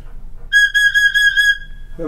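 A small metal flue pipe taken from the swell division of a Kuhn pipe organ, blown by mouth: it sounds one steady, high, whistle-like note with a slight breathy waver, starting about half a second in and lasting about a second and a half. The organist takes it for a pipe from a 2-foot flute or octave stop.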